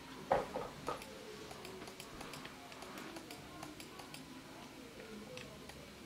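A brief voice sound in the first second, then faint, irregular light clicks in a quiet room.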